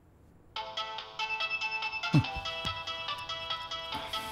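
Mobile phone ringtone playing a melody, starting suddenly about half a second in after near silence, with a low falling swoop about two seconds in.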